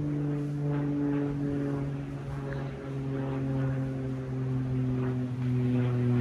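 A low, steady engine drone whose pitch slowly falls.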